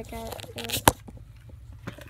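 A child's voice briefly at the start, then a sharp click about a second in and a fainter click near the end as a gift bag and its contents are handled.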